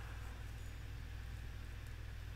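Steady low hum with a faint hiss from the small pump of a printhead-unclogging machine, running and circulating distilled water through the tubes and printhead.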